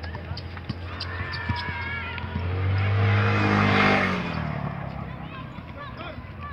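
A motor vehicle driving past: its engine grows louder, peaks about three to four seconds in, then drops in pitch and fades as it goes by. Underneath are the scattered knocks of a basketball bouncing on a court and players' distant voices.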